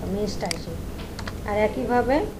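A few computer keyboard key clicks as code is typed and edited, the sharpest about half a second in, between bits of a woman's speech.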